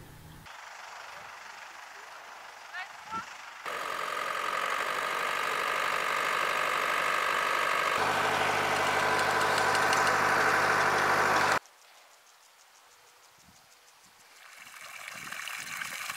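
Tractor engine running steadily while pulling a mechanical hoe with disc coulters through vegetable rows, slowly growing louder, then stopping abruptly. Near the end, a rush of water rises as it pours from a pipe into a basin.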